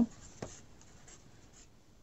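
Faint rustling and scratching of hands handling flower-filled eggshells in a cardboard egg carton, with one light click about half a second in.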